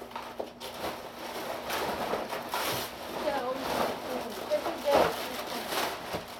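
Indistinct voices of several people talking in a room, with rustling and tearing of gift wrapping paper as presents are unwrapped.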